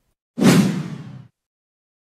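A whoosh sound effect for a logo sting, starting suddenly about half a second in with a heavy low hit and fading out within a second.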